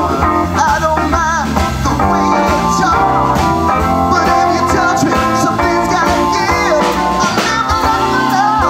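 Live blues-rock band playing: electric guitars, bass guitar, drum kit and keyboard, with a lead melody that bends and wavers in pitch over a steady low end.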